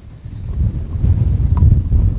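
Wind buffeting an outdoor microphone: a loud, uneven low rumble that builds about half a second in.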